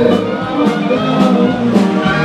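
Music with a steady beat of about two strikes a second under held instrumental notes.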